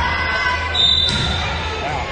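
Players' and spectators' voices ringing around a gymnasium, with a ball bouncing on the hardwood floor and a short high tone a little under a second in.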